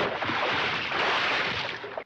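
Cartoon splash sound effect: a sudden burst of water noise that carries on as a rushing wash and eases off slightly near the end.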